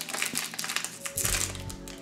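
Foil booster pack wrapper crinkling and tearing as it is pulled open by hand. Faint steady music runs underneath from about a second in.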